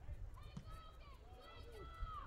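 Faint, distant voices calling out across a football stadium, several short rising-and-falling calls over a low rumble of outdoor field ambience.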